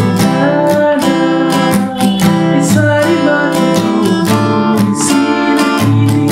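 Steel-string acoustic guitar strummed in a steady rhythm, about three strums a second, with the chords ringing on between strokes.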